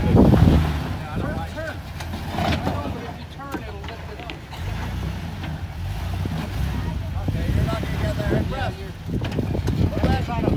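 Jeep Wrangler engine running at low crawling revs as it climbs a rock ledge, a steady low rumble. There is a louder surge right at the start.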